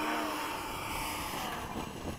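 Electric ducted-fan RC model jet running steadily, a rushing hiss with a faint steady tone in it.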